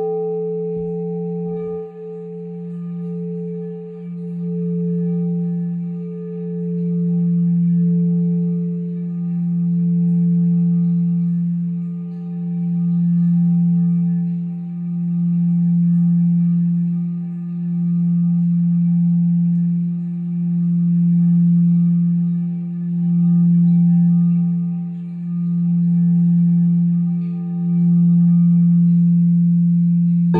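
Crystal singing bowl ringing in a long, steady tone with several higher overtones, its volume swelling and fading about every two and a half seconds. A second, higher tone joins about two seconds in.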